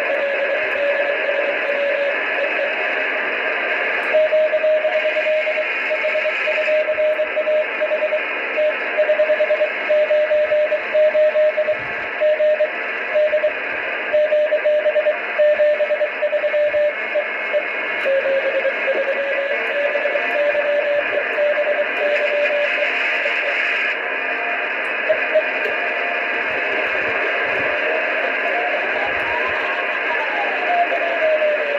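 Morse code (CW) from an amateur radio satellite downlink on the RS-44 (DOSAAF-85) transponder: a single whistle-like tone keyed on and off in dots and dashes over a steady bed of receiver hiss. Near the end a tone slides up in pitch and back down.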